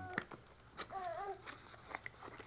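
A baby's brief vocal sound about a second in, rising then falling in pitch, among a few light clicks and taps from handling.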